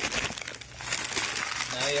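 Packing material in a gift box crinkling and rustling as hands handle it.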